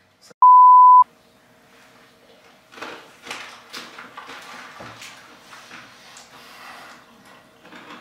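Censor bleep: one loud, steady, high-pitched beep about half a second long, just after the start. Faint crinkling and small clicks follow as a small candy packet is handled.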